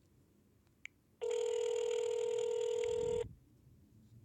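Phone ringback tone over the speakerphone: a single ring of about two seconds, a steady low tone starting a little over a second in. It is the sign that the outgoing call is ringing at the other end and has not yet been answered. A faint click comes just before it.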